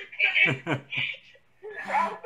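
A man chuckling: a few short laughs in the first second, each falling in pitch, then a brief pause.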